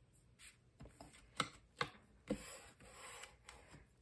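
Faint paper handling: a few light taps, then a soft rubbing, as glued cardstock panels are pressed down and smoothed by hand on a card base.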